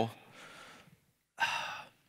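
A man's breath picked up by a close microphone: a faint exhale as his sentence trails off, then a short intake of breath about a second and a half in, just before he speaks again.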